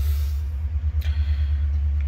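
Steady low hum of a running Thecus N5550 NAS, with a faint click about a second in.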